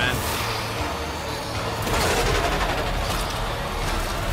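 Soundtrack of an animated episode: a steady, dense low rumble of sound effects, swelling slightly about halfway through.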